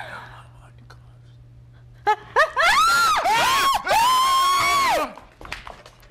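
A woman's high-pitched, drawn-out theatrical cry starting about two seconds in. It comes in several long arcs of rising and falling pitch, the last one held for about a second before it breaks off. A faint steady hum lies under the quiet first two seconds.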